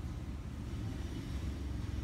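Steady low background rumble with no clear events.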